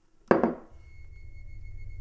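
A sudden sharp hit that dies away within half a second, followed by a low drone that slowly swells, with a thin steady high tone above it: a dramatic music sting on the soundtrack.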